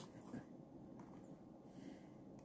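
Near silence: room tone, with faint handling of a carded toy car, a small soft sound about a third of a second in.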